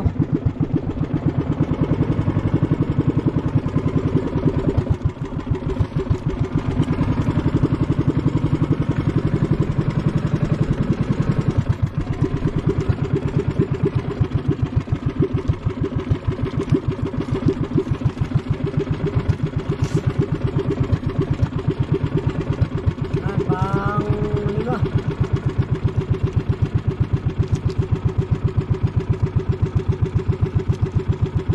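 Small inboard engine of a motorized outrigger boat (bangka) running steadily under way, a rapid even chugging.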